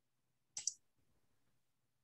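A quick double click, as from a computer mouse, about half a second in; otherwise near silence.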